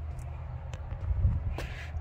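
Steady low mechanical hum, with a few faint clicks and a soft low thump just past a second in.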